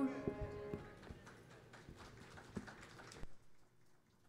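A grand piano's final chord fades out, then a few faint, irregular footsteps and knocks that stop abruptly about three seconds in.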